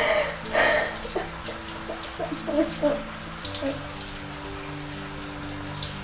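Shower water falling steadily. A woman sobs with heavy breaths in about the first second, over low, sustained music notes.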